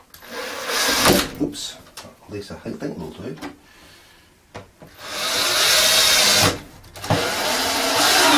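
Cordless drill driving screws in short runs: one burst about a second in, a longer steady run around the middle, and another near the end.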